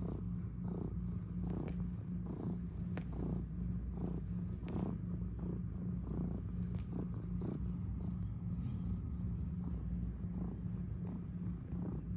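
Domestic cat purring steadily at close range while kneading a fleece mat, the purr rising and falling in an even rhythm about every two-thirds of a second. A few faint ticks are heard now and then.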